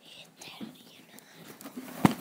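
Faint whispering close to the microphone, with light rubbing and clicks from the phone being handled against clothing.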